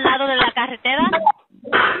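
Speech only: a 911 operator's voice on a recorded emergency phone call, asking a short question, with a brief pause about one and a half seconds in.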